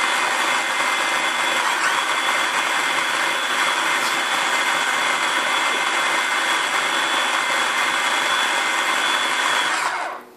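Small electric blender running steadily with a high whine as it purées canned cat food and water into a soup. The whine dips briefly about two seconds in, and the motor cuts off right at the end.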